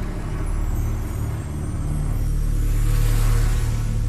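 A motor vehicle's engine running as it drives along, a low steady drone that grows somewhat louder toward the end.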